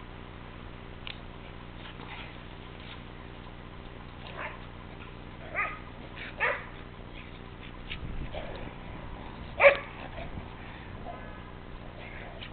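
Dog giving a handful of short, sharp yips and barks while playing, spaced a second or so apart, the loudest about ten seconds in.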